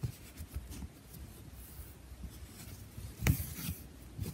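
Needle and thread being pulled through fabric stretched taut in an embroidery hoop: soft scratching and rubbing, with a sharper tap a little over three seconds in.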